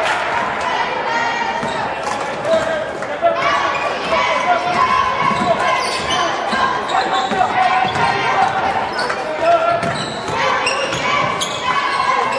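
Basketball game sounds in a gym: a ball bouncing on the hardwood court amid shouting voices, all echoing in the large hall.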